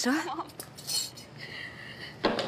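Cutlery and dishes clinking on a laid restaurant table, with a short ringing note in the last half-second.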